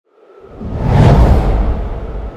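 A whoosh transition sound effect with a deep rumble. It swells up out of silence, peaks about a second in, then slowly fades.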